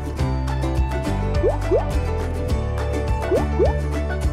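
Background music with a steady beat, overlaid with two pairs of quick rising bloop sound effects like water drops, about a second and a half in and again near the end.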